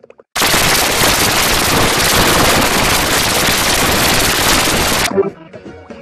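A very loud burst of harsh, crackling noise, filling everything from deep lows to the highest treble, starts abruptly just after the beginning and cuts off suddenly about five seconds in.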